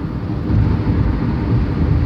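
Road and engine noise inside a moving van's cabin: a steady low rumble that grows a little louder about half a second in.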